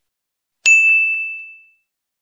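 A single bright notification-bell ding, a sound effect for the subscribe button's bell. It strikes about two-thirds of a second in and rings out over about a second.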